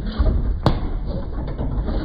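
A basketball strikes a motorised, self-aiming backboard once with a sharp bang about two-thirds of a second in, over a steady hiss and low rumble.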